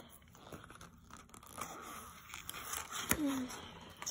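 Tape being picked and peeled off a small paperboard box, scratchy tearing and crinkling with scattered clicks, and a sharp snap about three seconds in.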